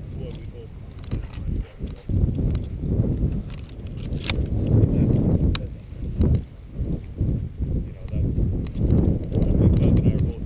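A hunter's footsteps through tall dry grass, a rhythmic low rumbling and brushing that rises and falls about once a second, with two sharp clicks near the middle.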